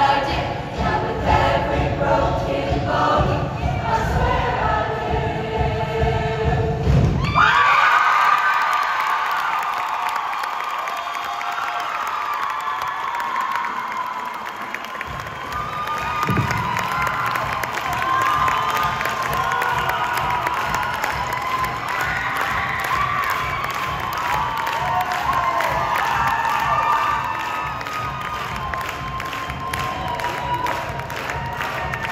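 A show choir's song, sung over loud bass-heavy music, ends abruptly about seven seconds in. A large audience then cheers, with many high-pitched shouts and screams, and keeps going to the end.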